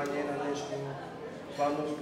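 Speech only: a man talking into a handheld microphone, with a brief pause near the end.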